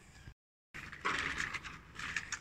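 Faint outdoor noise, broken by a short dead gap at an edit cut, then light scraping and clicking from children's bicycles rolling over a dirt lane.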